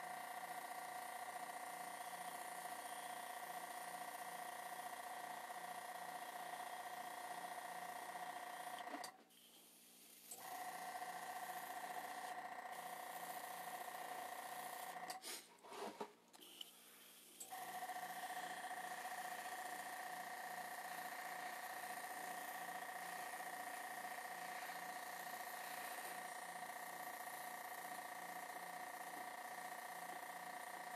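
Small airbrush compressor running with a steady whine over a hiss of air. It cuts out briefly twice, about nine seconds in and again around sixteen seconds.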